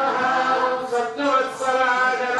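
A priest chanting Sanskrit puja mantras in a steady, sing-song recitation with no break.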